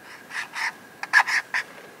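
Felt-nib brush marker scratching over gesso-coated paper in four short strokes, in two pairs about a second apart.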